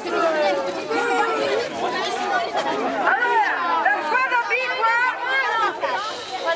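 Many voices, mostly children's, chattering and calling out over one another in a group.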